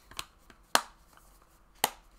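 Plastic Blu-ray case being handled and snapped shut: two sharp clicks about a second apart, with a few lighter taps around them.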